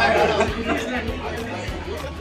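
Chatter of several voices over background music with a steady beat.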